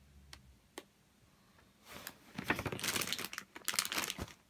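A couple of faint clicks, then from about halfway in a couple of seconds of crisp paper rustling as the pages of a glossy printed booklet are handled and turned.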